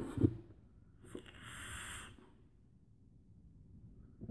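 A short thump right at the start, then one long breathy hiss of about a second, a vaper drawing on or blowing out a cloud of vapor from a mechanical mod with a dripping atomizer.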